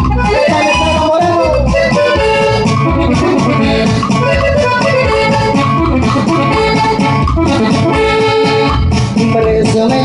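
Live band playing a corrido at full volume, an instrumental passage with a melody lead over bass and a steady beat.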